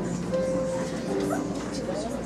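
Piano accompaniment with a woman singing a slow musical-theatre song, her notes held and gliding over the piano.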